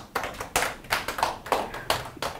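A small audience of a few people clapping: scattered, irregular hand claps rather than a full applause.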